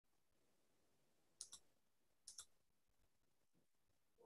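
Near silence: faint room noise with two quick double clicks about a second apart.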